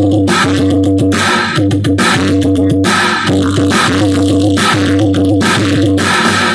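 Loud dance music played through a large array of horn loudspeakers, with a heavy steady bass and a chopped, stop-start beat.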